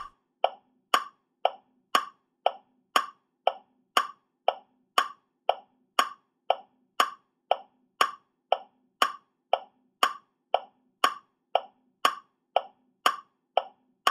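A steady ticking, two short ticks a second, like a clock ticking, which stops at the end.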